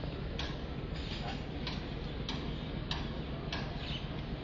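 A regular ticking, six sharp clicks about two-thirds of a second apart, over a steady low background rumble.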